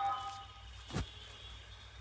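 A short ringing tone with several steady pitches dies away within the first second, then a single dull thump about a second in, over a faint low background hum.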